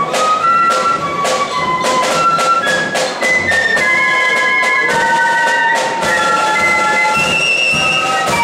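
A flute band playing a tune: massed transverse flutes carry a high melody in held notes over frequent sharp drum strokes.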